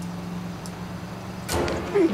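Steady engine and road hum inside a moving car, from a film soundtrack. About one and a half seconds in, a louder gagging sound from a passenger rises over it.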